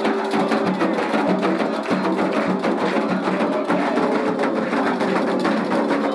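Candomblé ritual music for the orixá Ogun: hand drums and a clinking percussion part playing a fast, steady rhythm while the congregation sings a chant.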